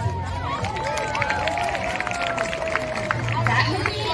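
A pre-recorded walkout track of music and voices played over an outdoor loudspeaker. A long tone slides slowly down in pitch over the first three seconds, with scattered sharp clicks throughout.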